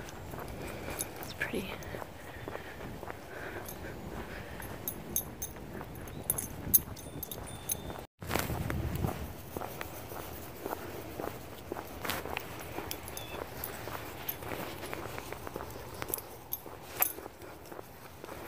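Footsteps of a person walking on an asphalt path, with scattered faint high ticks. The sound cuts out briefly about eight seconds in.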